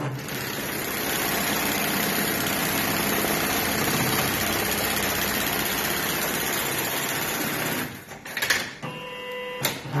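JUKI AMS-224C programmable pattern sewing machine stitching at high speed: a dense, steady run that stops about eight seconds in. It is followed by a couple of sharp clicks and a brief steady hum, then it starts stitching again at the very end.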